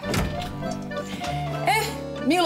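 A single sudden thunk at the very start, then music; a voice comes in near the end.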